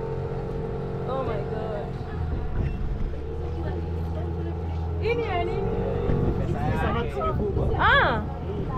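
Outboard motor of a covered wooden passenger boat running steadily while under way, with people's voices over it.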